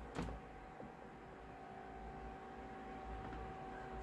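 A dry-erase marker writing on a whiteboard, faint against a quiet room with a steady hum, with one short tap just after the start.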